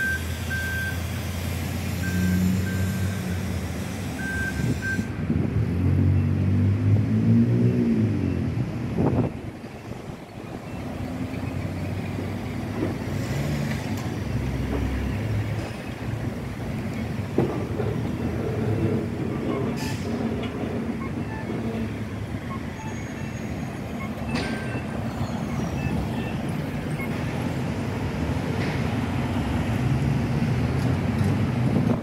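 City street traffic: vehicle engines running and passing steadily, with one vehicle accelerating, rising in pitch, about six to nine seconds in. A run of short high beeps sounds over the traffic in the first few seconds.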